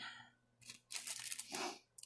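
Crinkling rustle of a small glassine paper bag and papers being handled, in a few short bursts, the longest one from about halfway through to near the end.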